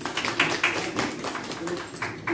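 A small group applauding, many quick irregular claps, with a few voices underneath.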